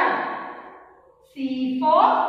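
A woman's voice in drawn-out, sing-song syllables: one long note fades away over the first second, and after a short pause another starts with a rising pitch near the end.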